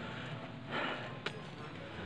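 A man's single audible breath close on a clip-on microphone, with a faint click just over a second in, over low background hiss.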